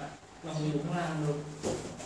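A man's voice held for about a second, a strained sound made while grappling on a padded mat. It is followed near the end by a single sharp thud.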